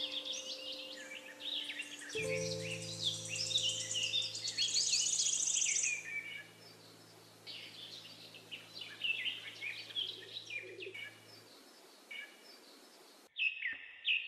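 Songbirds chirping and trilling in a busy, overlapping chorus that thins out after about six seconds. Under the birds, a soft held piano chord fades away about three quarters of the way through.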